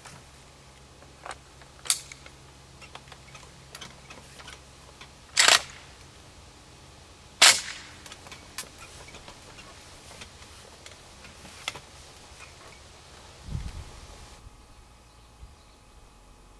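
Sharp metal clacks from an AK-pattern VEPR rifle being handled and readied on the bench, the two loudest about five and a half and seven and a half seconds in, with lighter ticks around them. A low thump comes near the end as the rifle settles onto the rest.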